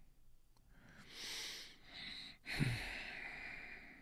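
A man sighing heavily in dismay as his trade goes against him: two long breathy exhalations, one about a second in and a longer one a second later, the second beginning with a brief low voiced sound.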